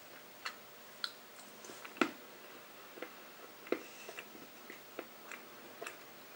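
Quiet, irregular mouth clicks and smacks of a person chewing and tasting a piece of dark chocolate, the loudest click about two seconds in.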